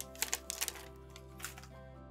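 Crinkling and crackling of a thin plastic protective film being peeled off a smartphone's back: a quick cluster of crackles in the first second and one more about a second and a half in, over steady background music.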